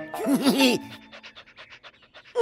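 Cartoon bulldog panting in quick, even breaths, about seven a second. A short bouncing vocal sound comes before it.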